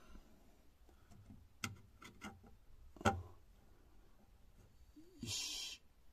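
Light knocks of a wooden ceiling hatch panel being pushed into place from below, the loudest about three seconds in, followed near the end by a short scrape of the board sliding.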